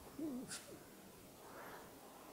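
A man's faint, low wavering hum, like a brief "hmm", with a short soft click about half a second in, then quiet room tone.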